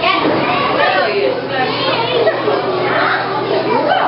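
Young children calling out and chattering as they play, several voices overlapping, with high-pitched rising and falling calls.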